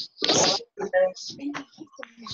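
A person's voice speaking indistinctly, opening with a loud breathy hiss about a quarter of a second in, then short broken stretches of talk.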